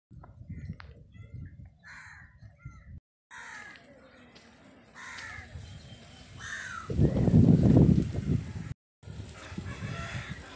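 Crows cawing several times, harsh calls that fall in pitch, over outdoor background noise. About seven seconds in a louder low rumble swells for a second or two.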